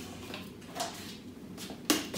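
Handling noise from a small plastic microcurrent device and its cords being picked up: faint rustling and a few light knocks, with one sharp click near the end.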